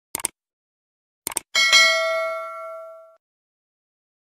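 Subscribe-button animation sound effect: two quick mouse-click double clicks, then a bright bell chime about a second and a half in that rings for more than a second and fades away.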